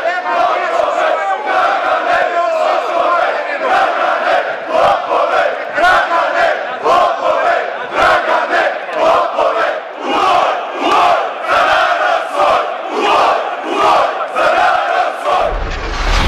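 A large crowd of protesters shouting and chanting together in a steady rhythm, about one and a half shouts a second by the second half.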